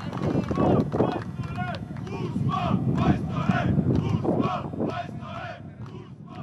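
A small group of football fans shouting and chanting encouragement to a player, several raised voices overlapping, with a few thuds of balls being kicked on grass. The voices fade near the end.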